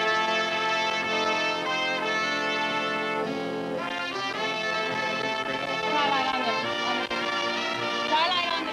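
A studio band led by brass plays a short Western melody in held chords, with a change about halfway through.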